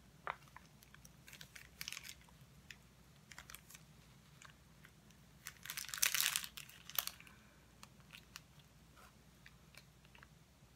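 Small clear plastic bag and glass oil bottle handled in the fingers: soft crinkling and light clicks and taps. The longest, loudest crinkle comes about six seconds in, followed by a sharp click.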